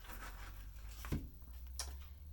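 Oracle cards being handled as a card is drawn from the deck: two short, soft card clicks, about a second in and near the end, over a faint low hum.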